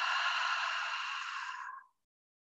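A woman's long audible exhale, a breathy sigh that fades out near the end: the releasing out-breath of a yoga cleansing breath.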